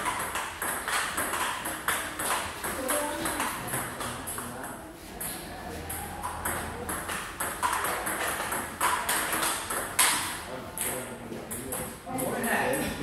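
Table tennis balls striking paddles and tables in ongoing rallies: quick, irregular sharp clicks, several a second, from more than one table.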